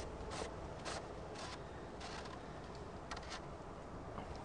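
Short plastic scraping and handling noises, about five or six brief scrapes spread over a few seconds, as the PVC potato cannon's back-end cap is fitted onto the combustion chamber.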